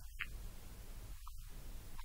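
Steady low hum and hiss, with a faint, muffled voice flickering underneath.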